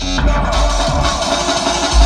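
Electronic dance music played from a DJ controller. The heavy bass cuts out at the start, leaving a brighter, busier passage, and the bass comes back right at the end.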